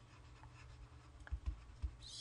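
Faint scratching of a stylus writing words on a tablet, with a few light taps in the second half.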